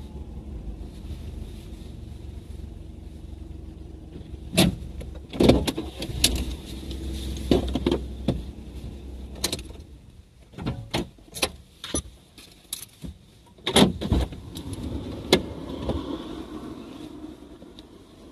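Inside a car's cabin: a low engine and road rumble as the car rolls in and stops, then a run of irregular clicks and knocks from inside the car. The low rumble fades about ten seconds in.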